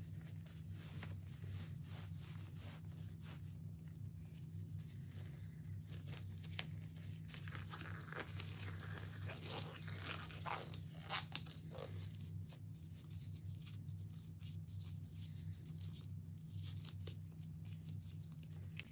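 Scattered crinkling, rustling and clicking, busiest in the middle, over a steady low hum.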